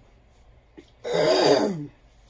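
A woman clearing her throat once, a rough burst just under a second long, starting about a second in. Her voice is going in and out.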